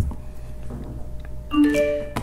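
A battery-powered speaker's power-on chime: three short notes rising in pitch, about a second and a half in, signalling that the speaker has switched on once plugged into the battery box's 12 V outlet.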